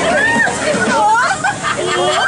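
Several people's voices calling out and singing over one another, high and sliding up and down in pitch, with a brief lull a little past halfway.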